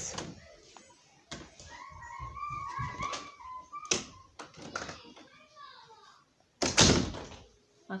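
A few light knocks and rubs, then a single loud thump about seven seconds in, with a faint voice in the background before it.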